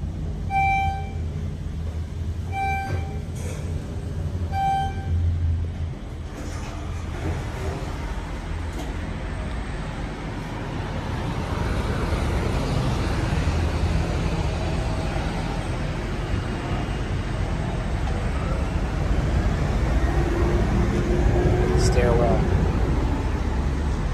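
Elevator car sounding a short single-pitched electronic beep about every two seconds, four times, over a low hum. It gives way to a steady open-air rumble of traffic and wind that grows louder about halfway through.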